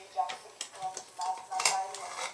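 Aluminium pressure cooker lid being twisted open and lifted off, giving a few sharp metal clicks, under short murmured voice sounds.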